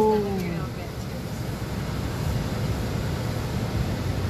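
Steady cabin noise of a stopped car with its air conditioning running, a low even hum and hiss. A drawn-out vocal note fades out about half a second in.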